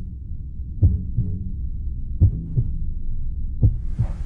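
Heartbeat-like low thuds in pairs, about every second and a half, over a steady low drone: a tension sound effect in a documentary score.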